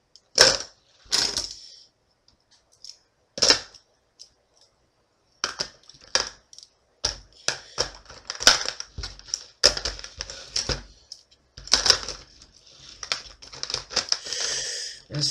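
Plastic pens clattering against each other and the sides of a plastic tub as they are dropped and pushed in by hand. A few separate knocks in the first few seconds, then a quick, busy run of clicks and rattles.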